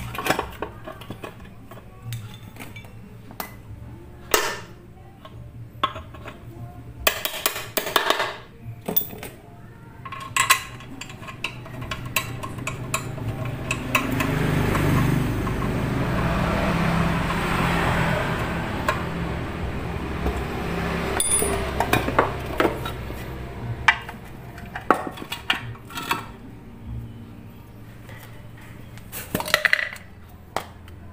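Scattered metallic clinks, taps and clicks of a spanner and small metal parts being handled on a scooter's CVT case. In the middle a louder rushing noise with a low rumble swells and fades over about ten seconds.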